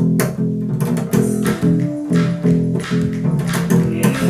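A large acoustic bass, played upright, picks out a repeating plucked bass line, with sharp percussive hits keeping time.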